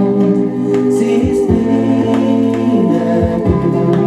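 Music played from a vinyl record: a group of voices singing long, held notes over instrumental backing, the chord changing a couple of times.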